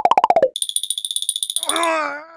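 Sound effects: a quick fluttering tone that falls in pitch, then a steady high-pitched tone for about a second, with a wavering voice-like sound coming in near the end.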